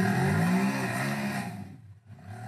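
Side-by-side UTV engine revving hard on a rock-ledge climb, with tyres scrabbling on the rock. The pitch rises early, holds, then dies away near the end. The reviewer hears it as the driver losing control and wrecking the rear CV axle.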